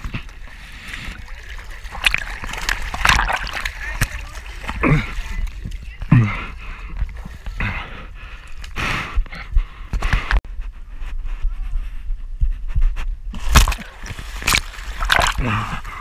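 Swimming pool water splashing and sloshing close by, in irregular bursts.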